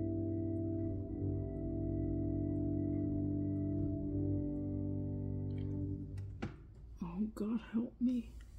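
Organ holding sustained chords, which shift a few times and cut off about six seconds in. A few light knocks follow, then a short wordless vocal sound that wavers up and down in pitch near the end.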